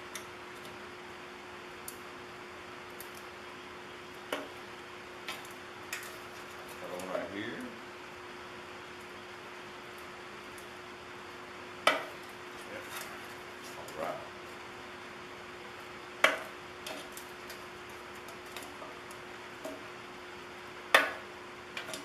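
Sharp metallic clicks and taps from a thin steel coffee can being handled and pierced with a Leatherman multi-tool to punch vent holes, about seven separate clicks spread out, the loudest near the middle and near the end. A faint steady hum runs underneath.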